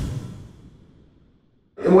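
A short breathy sound fading out within the first half second, then silence; a man's voice starts just before the end.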